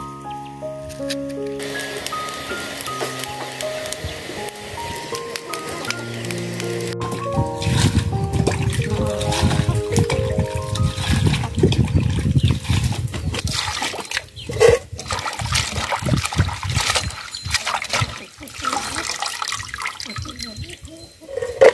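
Background music with a simple stepping melody for the first several seconds, then water sloshing, splashing and trickling as sliced bamboo shoots are washed by hand in a metal basin and lifted out dripping.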